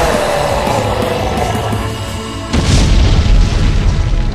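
A fading hissing rush, then a deep explosion boom about two and a half seconds in, with heavy low rumble: a cartoon energy-blast clash effect. Music plays underneath.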